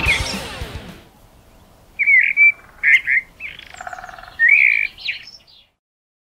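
Guitar music fading out in the first second, then a short series of bird chirps: about four quick calls over the next three and a half seconds, stopping shortly before the end.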